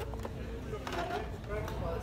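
Cardboard-and-plastic blister packs of diecast cars clicking and knocking against each other and the metal peg hook as they are flipped through, a few separate clicks, over faint background voices.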